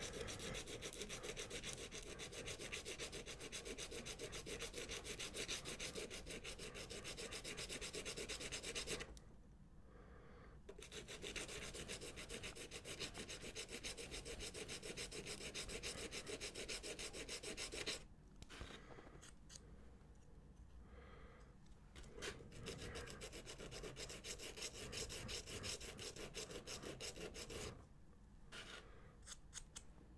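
A small plastic model part being sanded by hand, rubbed rapidly back and forth on a sheet of sandpaper to take down its edge. There is a short pause about nine seconds in. The strokes grow lighter and more broken in the last third.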